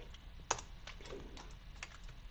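Typing on a computer keyboard: a few scattered single keystrokes, the loudest about half a second in.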